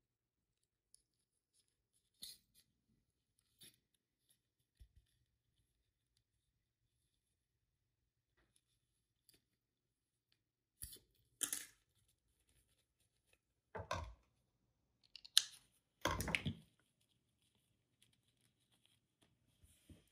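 Faint, scattered handling sounds of hand-sewing: thread drawn through gathered satin ribbon and the fabric rustled in the hands, a few light sounds at first and a cluster of louder short rustles and knocks past the middle.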